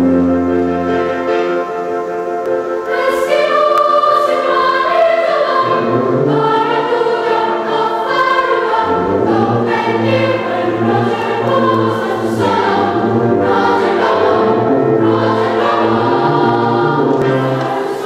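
Children's and youth choir singing in several voices, accompanied by a tuba holding low sustained notes.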